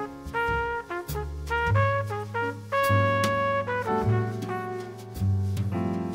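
Jazz quintet music: a brass horn plays a line of separate held notes over bass and drums, with cymbal strikes.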